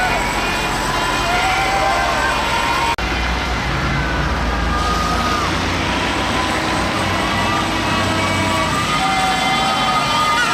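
Heavy trucks driving slowly past with their engines running low, under people shouting and calling out. There is a sudden brief break about three seconds in, after which the engine rumble is stronger.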